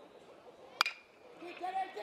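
Metal baseball bat hitting a pitched ball: one sharp ping with a brief ring about a second in, over low stadium background.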